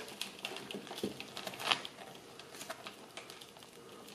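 Faint, scattered ticks and crackles of damp peat-and-perlite potting mix crumbling and fig roots being pulled apart by hand, a few clicks louder about a second in and near the middle, thinning out toward the end.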